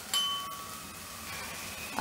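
A metal spoon clinks against a steel container while half a spoonful of ginger-garlic paste is scooped out. It is a single strike just after the start that rings on clearly and fades over about a second.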